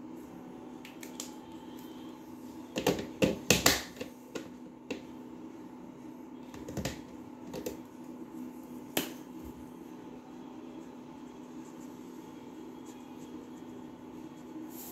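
Plastic caps of KingArt mini markers clicking and markers clacking as colours are swapped: a quick run of sharp clicks about three seconds in, then a few single clicks over the next several seconds, over a steady low hum.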